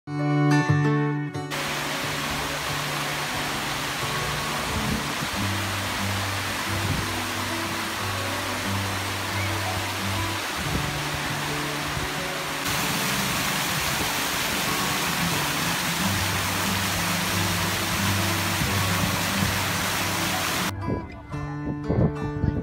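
Rushing, splashing water of a large fountain's many jets over background music with low sustained notes; the water comes in about a second and a half in, gets louder about halfway through, and cuts off abruptly just before the end.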